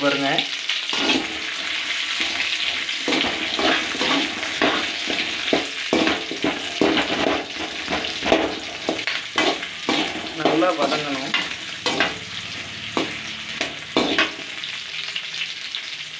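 Shallots, garlic and dried red chillies sizzling in hot oil in a pan, with a steady hiss, while a perforated steel spatula stirs them, scraping and knocking against the pan again and again.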